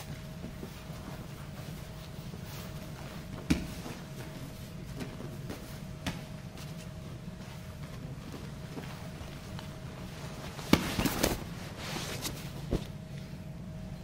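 Grapplers in gis shifting on tatami mats: a few isolated knocks and scuffs over a steady low room hum, with a louder flurry of scuffing and bumps near the end.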